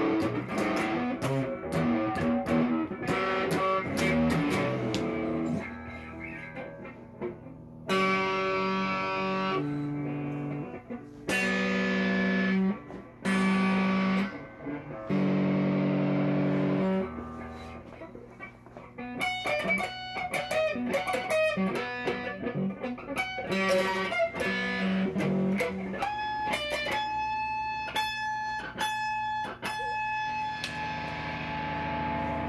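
Electric guitar being played. It starts with a run of quick picked notes, then chords held for a second or two at a time with gaps between, then higher notes picked over and over.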